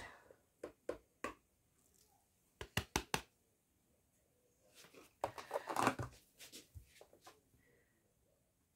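Scattered small clicks, taps and rustling from kitchen items being handled at a stand mixer's steel bowl, with a quick run of four sharp clicks about three seconds in and a longer stretch of rustling and clicking around six seconds. The mixer motor is not running.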